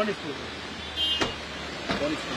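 A car's engine idling under brief talk, with two short sharp knocks about a second and three-quarters apart, the second near the end.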